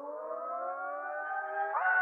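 Siren-like wind-up opening the song: a stack of tones glides up from a low pitch and levels off, as a siren does. Near the end it steps into a steady, sustained chord as the music begins.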